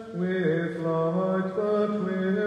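A man's voice chanting a liturgical text in plainchant, holding a note that dips lower for about a second and then steps back up, in a resonant church.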